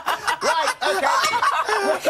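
Several people laughing out loud together, in repeated bursts.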